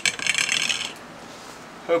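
Hand tools or plumbing parts being handled: a rapid clicking rattle lasting just under a second, then quiet.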